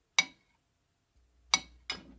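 Three sharp clinks of kitchenware, each ringing briefly: one just after the start and two close together near the end.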